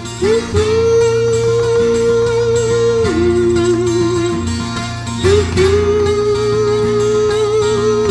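Twelve-string acoustic guitar playing steadily, with two long held wordless vocal notes over it, each scooping up into the note and wavering slightly; the first starts about half a second in and the second about five seconds in.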